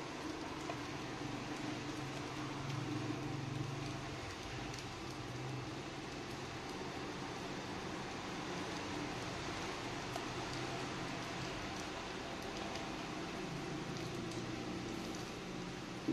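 A steady low hum and hiss of machine background noise, with faint scraping as a knife blade scores the foil pouch of a Samsung lithium-ion polymer phone battery.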